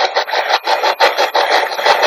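SB-11 spirit box sweeping through radio frequencies: a fast, choppy rasp of static chopped into about seven or eight short bursts a second.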